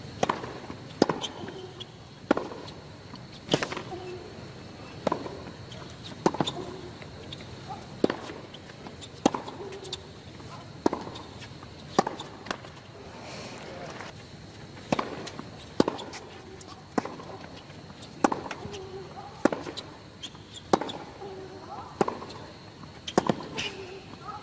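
Tennis ball struck back and forth by rackets in a rally: a sharp pop about every second and a half, with a player's short grunt after some shots.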